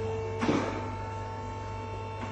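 A steady low electrical hum with faint sustained tones, and one sharp knock about half a second in.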